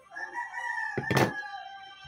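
A rooster crowing once, one long call of about a second and a half. About a second in, a short loud thump, a bowl being set down on the table, is the loudest sound.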